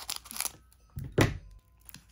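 Scissors snipping across the top of a foil trading-card booster pack, with the wrapper crinkling in the hands, and one sharp thunk a little past the middle.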